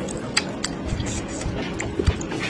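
A few soft wet clicks as a peeled egg is pressed and rolled in thick chili sauce in a ceramic bowl, over faint background music.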